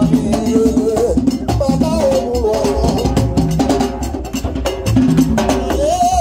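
Haitian Vodou drumming on tall hand drums, a steady repeating percussion rhythm, with voices singing over it.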